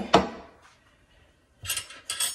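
Ceramic dishes and utensils handled on a kitchen counter: a sharp knock just after the start, then a short clinking clatter near the end.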